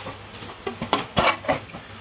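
A scatter of light clicks and knocks of hard plastic being handled, about half a second to a second and a half in: the clear plastic cover of a street-light housing being picked up and moved.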